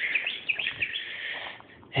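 Small birds chirping: a run of short, high chirps.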